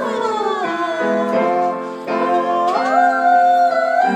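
A young woman singing in practice over an instrumental accompaniment of held chords; her voice glides down through the first second and swoops back up about three seconds in.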